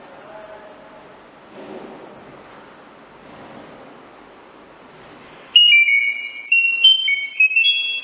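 Chirp data-over-sound signal: a loud string of short, steady high tones, several at a time, stepping up and down in pitch, starting about five and a half seconds in and lasting about two and a half seconds. It is the encoded command that switches the light off.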